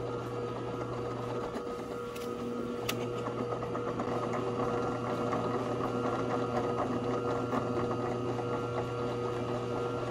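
Benchtop drill press running with a steady motor hum while the bit drills through thin aluminium sheet backed by a wood board. The cutting noise grows a little louder after about three seconds, with a brief click around then.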